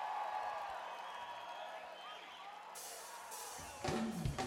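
Faint crowd noise from an outdoor concert audience, then about three and a half seconds in a live funk-jazz band with drum kit and horns comes in loudly on a drum hit.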